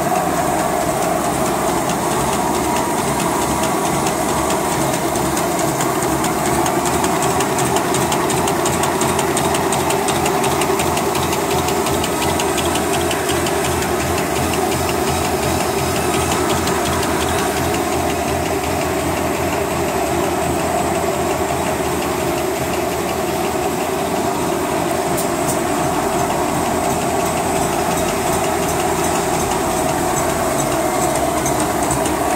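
CL-NP-7000K-2 V-folding napkin paper making machine running at speed, with a steady, fast mechanical clatter.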